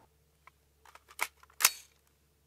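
A handful of short, sharp mechanical clicks, spaced unevenly, the last one near the end the loudest.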